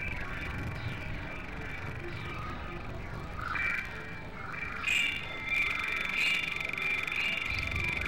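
Experimental electronic sound collage: several music tracks layered and processed together into a dense, noisy texture. Held high tones run over a rumbling noise bed, with short gliding sounds and louder swells about five seconds in.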